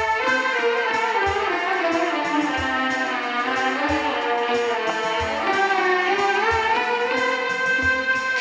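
Instrumental interlude of a Balkan Turkish folk song: a long-necked fretted lute with a skin-covered banjo-style body plays a winding melody, over a low beat that falls about every 1.3 seconds.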